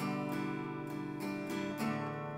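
Dove acoustic guitar strummed with a pick, ringing chords with a few fresh strokes and chord changes through the second half.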